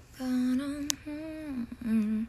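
A young woman humming a tune softly in a few held notes that slide from one pitch to the next. A brief click comes about a second in.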